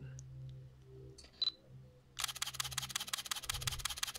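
Fujifilm X-Pro1 firing a continuous burst at its 6 frames-per-second setting: a rapid, even run of shutter clicks starting about two seconds in and lasting about two seconds before it stops. The camera manages six or seven frames before it bogs down. A single click and a short high beep come just before the burst.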